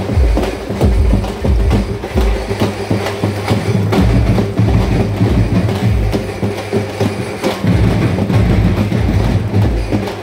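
Loud percussion music with a fast, steady beat of deep drum thumps and sharp clicks.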